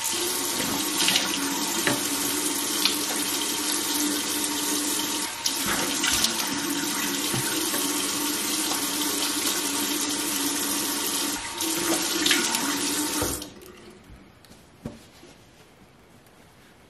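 Bathroom sink faucet running steadily into the basin, with a few brief splashes as hands work under the stream; the tap is shut off a few seconds before the end, leaving a quiet room.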